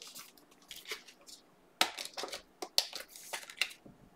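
Trading cards and a foil card-pack wrapper being handled: a run of short, irregular crinkles and clicks, the loudest about two seconds in.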